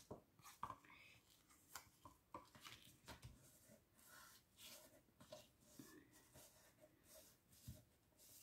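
Faint paper handling: card stock shuffled, then fingertips pressing and rubbing a freshly glued paper panel flat onto a card base. The sound comes as soft, irregular rustles and light taps.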